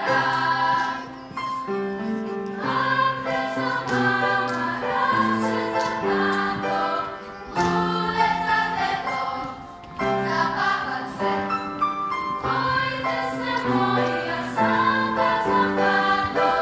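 Children's choir singing a song together, the voices moving from note to note in short held tones.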